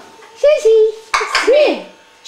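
A person laughing in two drawn-out, rising-and-falling vocal bursts, with a brief sharp click just after a second in.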